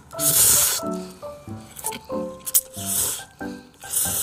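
Instant ramen noodles being slurped three times, the first slurp the loudest and longest, over soft background music.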